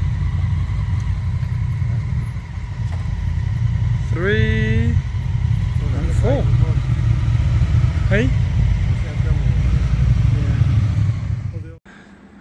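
Motorcycle engines running at low revs as several adventure bikes roll in one after another, a steady low rumble that cuts off suddenly near the end.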